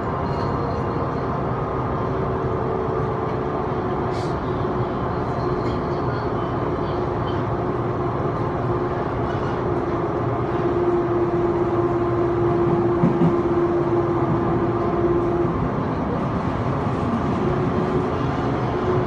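Running noise of an Odakyu 2000 series electric commuter train heard from inside the carriage: steady wheel and track noise with a steady motor hum that cuts out about fifteen seconds in. The noise grows louder and echoes from about eleven seconds in as the train runs into the tunnel.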